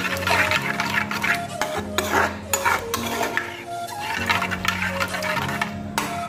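A spoon scraping and stirring a thick curd-and-masala gravy around a pan, in repeated short strokes as freshly added curd is mixed in. Background music with sustained notes plays underneath.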